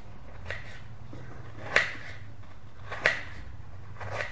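Knife cutting fruit into small pieces, the blade knocking against the plate in a few short, sharp clicks, the two loudest about a second apart past the middle.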